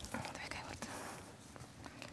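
Faint murmured voices with a few soft clicks and knocks.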